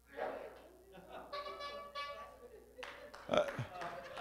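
A horn, called for as the trumpet, blown weakly: a short sputter, then a faint, thin note held for just under a second, about a second in. It is a failed attempt at a proper blast.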